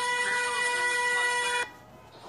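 A steady, unwavering horn tone held for a couple of seconds over street noise, cut off abruptly near the end.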